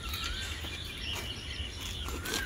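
Outdoor ambience with a bird calling: a short whistled note near the start and a faint thin higher call running through, over a steady low rumble.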